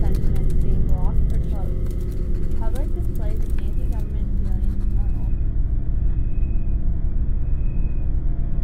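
A steady low rumbling drone with an indistinct voice in the first half. About five seconds in, the upper hiss cuts off suddenly, leaving only the low drone.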